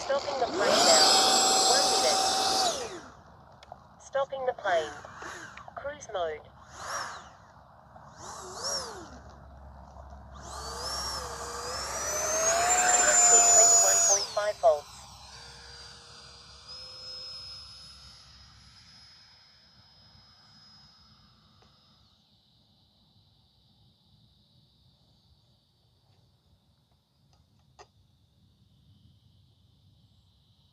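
Electric ducted fan of an E-flite Habu SS 70 mm EDF jet throttled up on the ground as the jet taxis: a loud whine for about three seconds, several short throttle blips with pitch rising and falling, then a longer run with rising pitch that cuts off sharply about halfway through.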